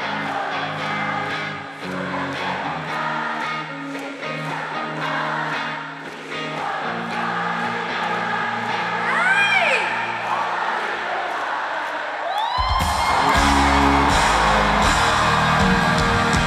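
Live pop concert music in an arena, with singing and crowd voices over a steady beat. About twelve and a half seconds in, drums and heavy bass come in and the music gets louder.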